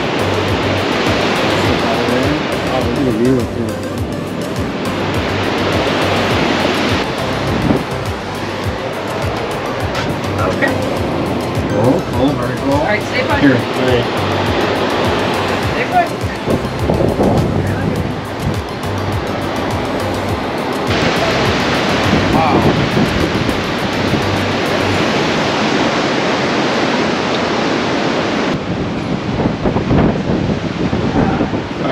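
Ocean surf breaking on the rocks and wind on the microphone, a steady rushing noise, with music and indistinct voices over it.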